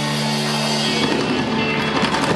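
Live rock band (electric guitar, bass guitar, drum kit and keyboard) holding a sustained chord that breaks up about halfway through into a loose wash of drums and cymbals, like the closing flourish of a song.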